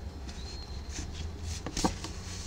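Soft rustling and rubbing of yarn and crocheted fabric as a needle and yarn are drawn through the stitches, with a brief, louder scratchy rustle near the end as the yarn is pulled through.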